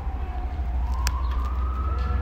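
A siren wailing, its tone sliding down and then slowly rising again, over a steady low hum.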